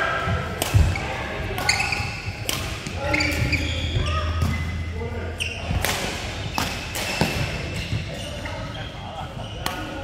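Badminton rally: sharp racket strikes on the shuttlecock, about one a second, with players' voices in the hall.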